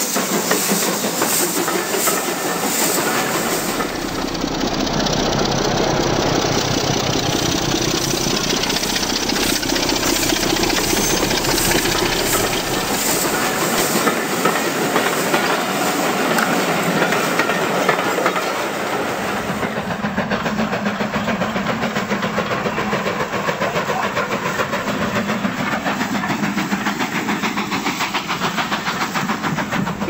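Model railway train running past at close range: a steady hiss with rapid clicking of the wheels over the rail joints. The sound changes about two-thirds of the way through.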